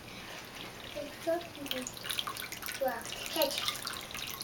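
Water trickling and splashing in a cat drinking fountain, with a toddler's hand playing in the stream.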